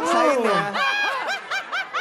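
A woman laughing in a high voice: a long falling note, then a quick run of short giggling bursts.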